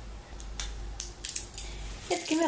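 A handful of short metallic clicks from a small dog's harness buckle and metal leash clip being handled and fastened.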